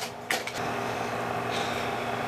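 Kodak Carousel slide projector running with a steady hum from its fan and motor, a couple of mechanical clicks at the start as the last slide leaves and the screen goes blank.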